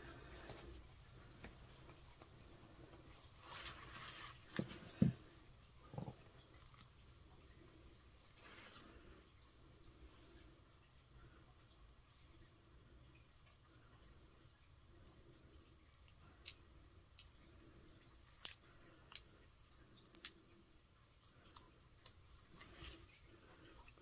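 Quiet handling of a brass wax-seal stamp and its hardened wax seal. There is a soft rustle and two small knocks about four to six seconds in, then, from about fifteen seconds, a scatter of small sharp clicks as the cooled seal is worked off the stamp head.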